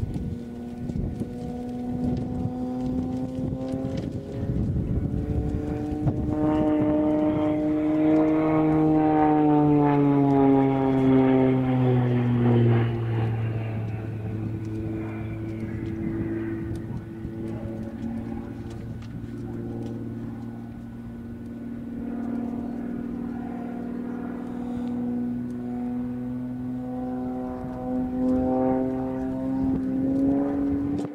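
Propeller-driven aerobatic plane flying overhead, its engine and propeller droning steadily. The pitch and loudness climb from about six seconds in, peak around ten seconds, drop sharply a little later, and climb again near the end as the plane works through its manoeuvres.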